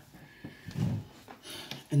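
A short low vocal sound a little under a second in, like a grunt or hum from someone bending down, followed by faint clicks and handling noise as a tarot card is picked up from the floor.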